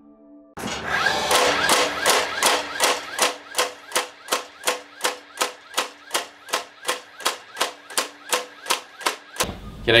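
DeWalt DCN660 18V brushless cordless 16-gauge angled finish nailer driving nails into timber in quick succession, a sharp shot about three times a second for nearly nine seconds.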